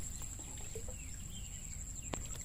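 Quiet outdoor ambience with a few faint bird chirps about a second in.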